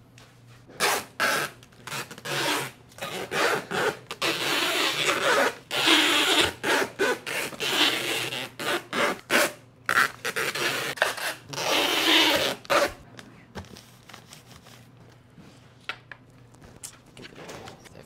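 Packing tape being pulled off the roll and pressed onto a cardboard shipping box, in several pulls of a second or two each. Short knocks and rustles from the box being handled come between the pulls, and the sound thins out in the last few seconds.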